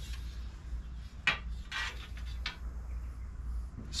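Aluminum bar and grill pieces handled and set down on a steel welding table: a few short metal clinks and scrapes, the first about a second in, over a low steady hum.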